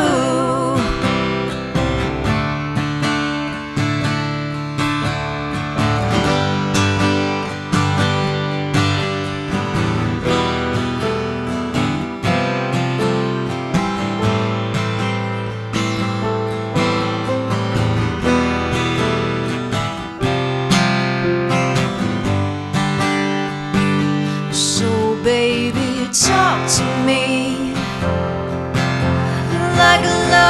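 Acoustic guitar strummed in a steady rhythm through an instrumental break of a pop ballad. A wordless sung line comes in near the end.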